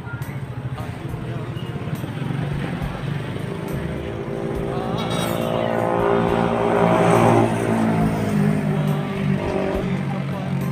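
A motor vehicle's engine passing on the street, growing louder to its loudest about seven seconds in and then easing off.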